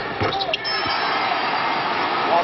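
A basketball knocks a few times on the rim and hardwood just after a made free throw. Steady arena crowd noise follows and fills the rest of the time.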